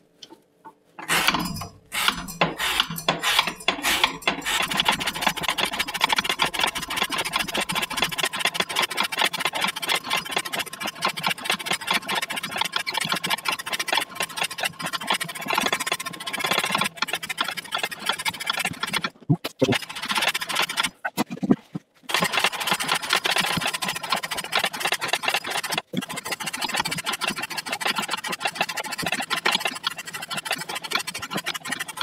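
Laminated CPM 15V knife blade slicing through rope in a steady run of rapid cutting strokes, a continuous rasping, with short breaks about 19, 21 and 26 seconds in.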